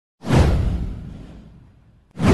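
Whoosh sound effect with a deep low boom, starting sharply and fading away over about a second and a half.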